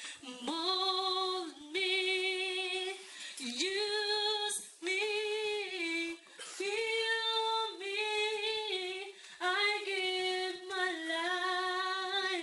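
A woman singing a slow worship song solo and unaccompanied: sustained notes with vibrato, in phrases of one to three seconds broken by short breaths.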